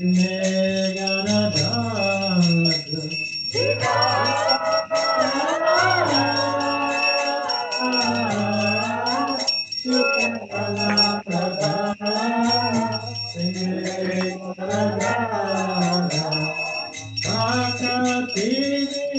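Devotional kirtan chant: one voice singing a bending melody over a regular low beat about once a second. A constant high ringing runs throughout, typical of a hand bell rung during an arati lamp offering.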